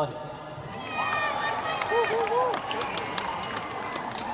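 Live concert audience cheering and clapping, with a few voices calling out in short rising-and-falling whoops.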